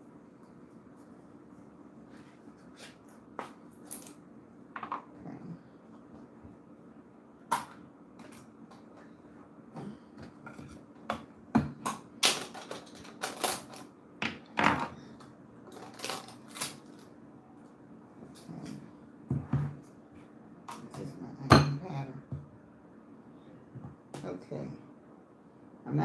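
Scattered clicks and knocks of a plastic onion-powder container being handled and opened at a kitchen table. The knocks come more often and louder in the second half, with one sharp knock near the end.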